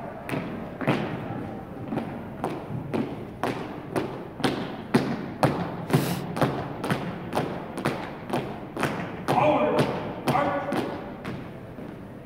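Marching footsteps of a color guard's dress shoes striking a hardwood gym floor in step, a sharp thud about twice a second.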